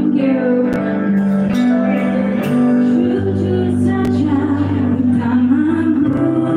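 A live band playing a song: a woman singing into a microphone over electric bass and electric guitar, amplified through the stage sound system.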